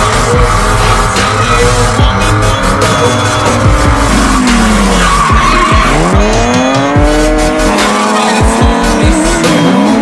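Drift car's engine revving up and dropping back several times while its tyres squeal through a slide, with music playing underneath.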